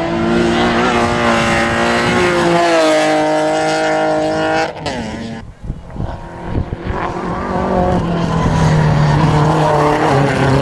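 A BMW 3 Series race car's engine running hard as the car runs off the road into the grass verge; its sound cuts off suddenly about five seconds in, followed by a few sharp knocks. From about seven seconds another race car's engine grows steadily louder as it approaches.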